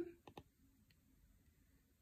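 Two faint clicks of an Apple Pencil tip tapping the iPad's glass screen, a fraction of a second apart.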